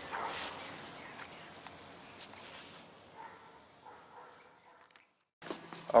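Faint outdoor background with light rustling and handling noise, broken by a moment of dead silence at an edit cut shortly before the end.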